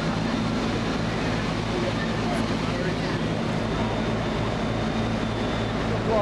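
Fire apparatus engine running steadily at the fireground: an even low hum made of several pitches, over a constant rushing background noise.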